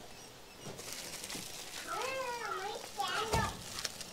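Faint background voices, among them a high child's voice rising and falling about two seconds in, with light rustling and clicks throughout and a short thump a little after three seconds.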